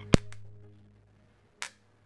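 A single sharp snap as the electrodes of a homemade microwave-oven-transformer spot welder touch and arc, followed by a low hum dying away over about a second. A fainter click comes near the end.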